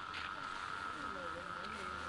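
Faint speech in the background over a steady high-pitched whine and a low hum.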